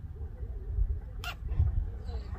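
Wind buffeting the microphone, a low fluctuating rumble, with a faint thin wavering whine over it. A short sharp rasp comes a little past a second in.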